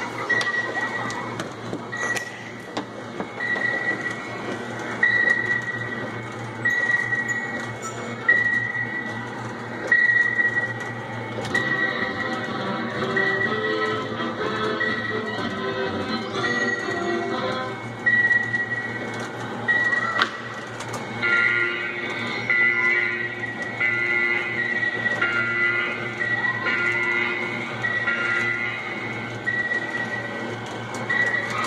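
Electronic music playing from an R.G. Mitchell 'Captain Nemo' coin-operated submarine kiddie ride: a high beep repeats a little faster than once a second, and a fuller tune comes in over it about two-thirds of the way through. A steady low hum runs underneath.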